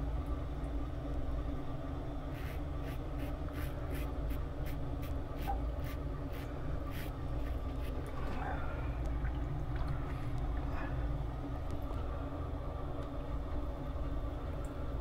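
CBL Orion double-edge safety razor scraping through lathered stubble in a run of quick short strokes, about two or three a second, from a couple of seconds in until past the middle, with a few scattered strokes later. A steady low hum sits underneath.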